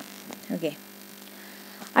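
Steady low electrical hum on the recording during a pause in speech, with a brief faint bit of voice about half a second in.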